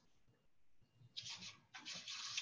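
Near silence for about a second, then faint rustling in two short bursts.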